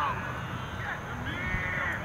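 Distant shouts and calls from soccer players across the field: a short call at the start and a longer held shout about one and a half seconds in, over a steady low background rumble.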